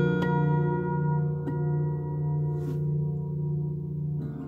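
Twelve-string acoustic guitar with a chord left ringing and slowly dying away. A few light single plucks, a little over a second apart, sound into it.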